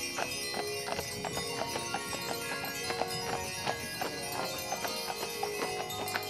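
Hooves of a pair of Percheron draft horses clip-clopping on paved road as they pull a carriage, a steady run of hoofbeats, with music playing over it.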